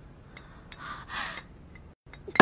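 A woman's two sharp, breathy exhalations about a second in, preceded by a couple of faint clicks of porcelain.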